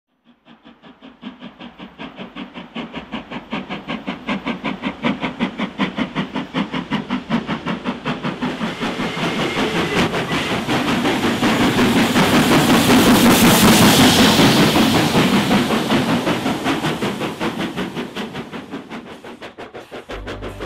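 LMS Black Five steam locomotive working hard, its exhaust beating in a rapid, even rhythm that builds from faint to loud as it comes close. At its loudest, about two-thirds of the way through, a strong hiss of steam rides over the beats before the sound begins to fade.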